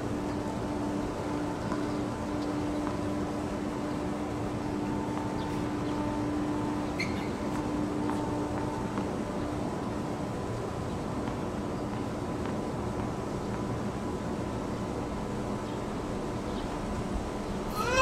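Steady outdoor background noise with a low, steady hum through the first half that fades out about halfway through.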